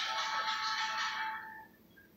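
Television audio with music playing in the background, fading away and cutting to silence near the end.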